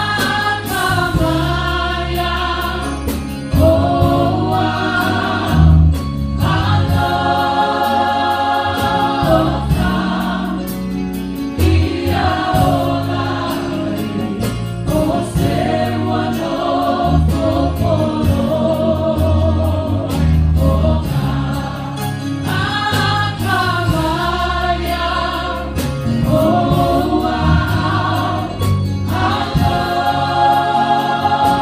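Church choir of men, women and children singing a gospel song in Samoan, in long held phrases, with keyboard accompaniment.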